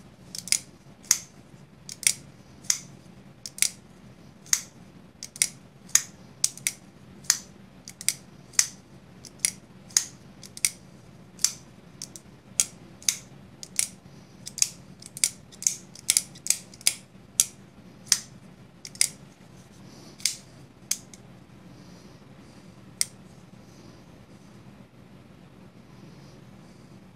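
Civivi Vision FG folding knife's blade being swung open and shut over and over on its freshly oiled pivot, a sharp click each time the Superlock engages or the blade closes, about one and a half a second. The clicks stop about 21 seconds in, with one more near 23 seconds, followed by faint handling.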